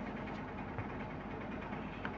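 Steady low background hum and hiss, with no distinct events.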